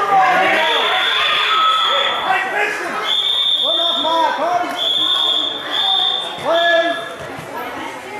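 Voices shouting in a large sports hall during a wrestling bout, with a high steady tone sounding several times from about three seconds in.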